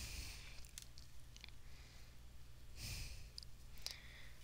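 Quiet room tone with a steady low electrical hum, a few faint clicks, and one soft breath at the microphone about three seconds in.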